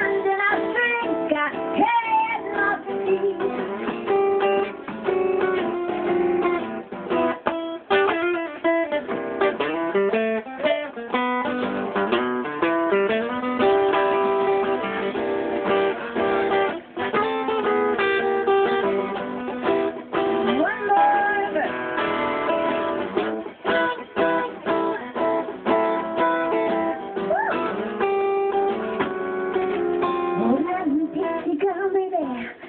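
Live band music: acoustic guitar strumming along with a drum kit, with little or no singing in this stretch.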